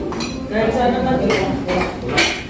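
Cutlery clinking against ceramic plates and bowls as people eat, a few sharp clinks over a murmur of conversation.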